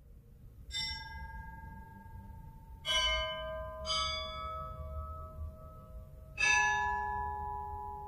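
Church bells struck four times, each strike a different pitch and each left ringing on into the next, over a low background rumble.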